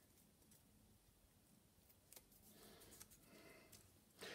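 Near silence, then, from about halfway through, faint rustling of a small scrap of old book page being finger-torn and handled.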